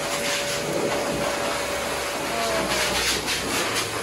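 Steady whooshing noise of a running electric motor moving air, with a faint steady whine through most of it.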